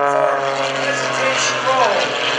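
Engine and propeller of an MX-2 aerobatic monoplane (350 horsepower, MT propeller) running under power on a low pass, a steady multi-toned drone that sinks slowly in pitch as it goes by.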